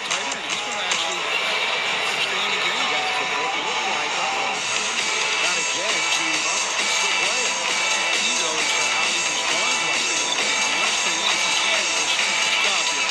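Arena music playing loudly over the noise of a basketball crowd during a timeout; the music grows fuller about four and a half seconds in.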